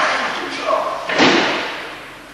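A single heavy thud about a second in: the thrown partner's body landing on the mat in a breakfall at the end of an aikido throw, likely iriminage.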